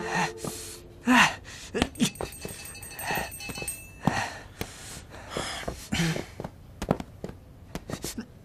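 A man's grunts, gasps and heavy breaths of exertion as he grapples with a padded punching dummy, the loudest about a second in, with several short thumps and knocks against the dummy.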